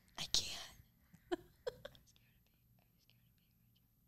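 A girl whispering into another's ear: a few short, breathy whispered words in the first two seconds.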